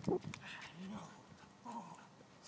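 A young English Labrador Retriever making short vocal sounds, with a man's firm "No" at the start.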